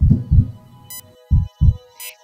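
A heartbeat sound effect in the soundtrack: two low double thuds, about a second and a quarter apart. A short high tick comes about once a second over a steady electronic hum.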